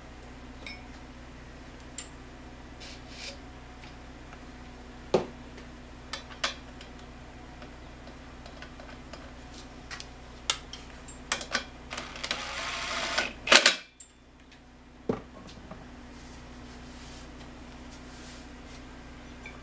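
Scattered clicks and knocks of tools being set down and picked up on a workbench over a steady low hum. About two-thirds of the way through, a short rising hiss ends in the loudest clatter.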